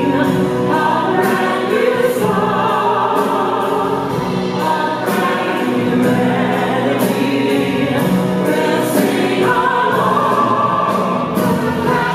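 A mixed choir singing, with instrumental accompaniment.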